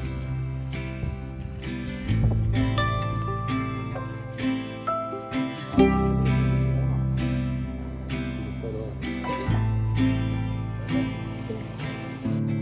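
Background music: plucked strings picking out a steady pattern over held bass notes, with the chord changing every few seconds.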